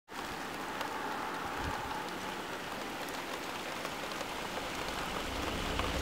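Steady rain falling: an even hiss dotted with the ticks of single drops, with a low rumble joining about five seconds in.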